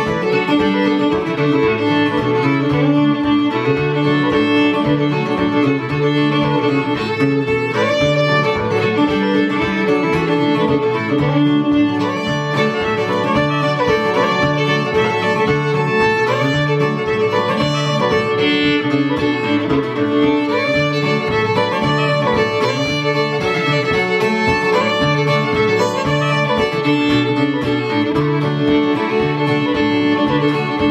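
Fiddle and acoustic guitar playing an instrumental tune live: the bowed fiddle carries the melody over the guitar's steady rhythm of alternating bass notes.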